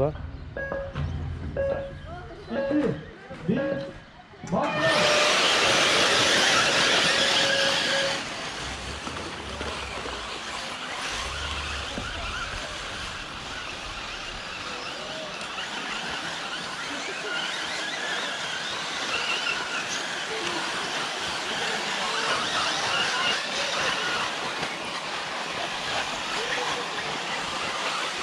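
A pack of 1/8-scale electric off-road RC buggies launching at the race start. About five seconds in comes a sudden loud rush of motors and tyres on dirt, which settles after a few seconds into a steady hiss of the cars running around the track.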